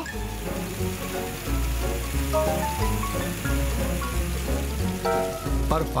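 Cartoon background music with a steady hiss of a fire truck's hose spraying water, a sound effect under the tune.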